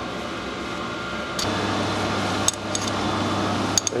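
A few light metallic clicks from micrometers and a setting standard being handled, over a steady machine-shop hum; a low hum steps up about a third of the way in and stays on.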